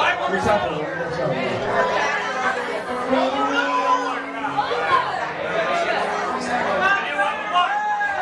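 Many people talking at once in a large hall, a steady hubbub of overlapping voices with no music playing.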